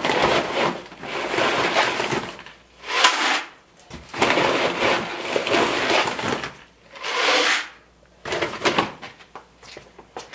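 Dry pellets being scooped out of a paper sack and poured into a plastic bucket, in several pours of a second or two each with short pauses between.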